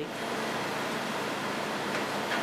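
A steady, even hiss of background room noise, with no distinct events.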